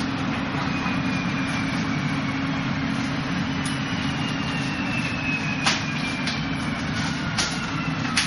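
Steady room noise with a low hum, broken in the second half by three sharp slaps of forearms and hands meeting in close-range Wing Chun sparring.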